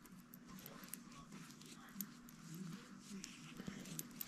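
Faint rustling and small clicks of yarn strands being pulled into a knot by hand. A faint, wavering voice-like sound comes about two seconds in.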